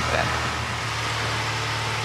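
Steady drone of a Cessna 172G's six-cylinder Continental O-300 engine and propeller in the climb, heard from inside the cabin.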